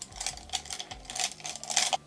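Makeup brushes clattering and clicking against one another as they are rummaged through to find one brush: a run of light, irregular clicks and rattles.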